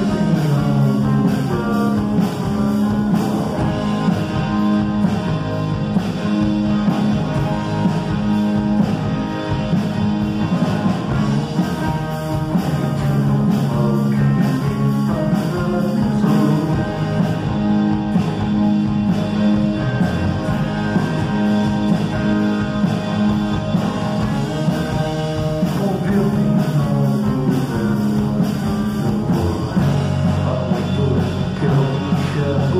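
Live rock band playing: electric guitars over a drum kit, with a steady beat and an even, unbroken level.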